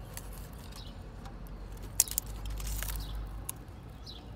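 Hand handling a small plastic sensor hanging on its wiring: light clicks and rubbing, with one sharp click about halfway through followed by a brief rustle.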